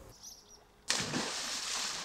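A few faint high chirps, then, about a second in, a sudden steady rush of churning, bubbling water as compressed air rises through the pool around the Olive floating biofilter.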